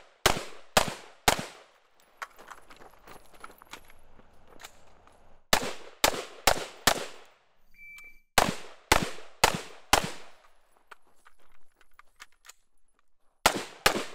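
AR-style carbine fired in quick strings of about four shots, roughly half a second apart, each shot with a ringing tail. Between the first and second strings there is a pause of a few seconds with small handling clicks. A short high electronic beep from a shot timer sounds just before the third string.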